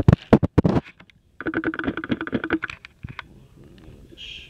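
Handling noise: a quick run of sharp knocks and clicks, then after a short gap a rasping, buzzing rustle lasting about a second.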